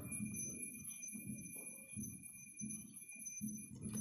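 Faint, uneven rubbing strokes of a marker drawing on a whiteboard, over a thin steady high whine.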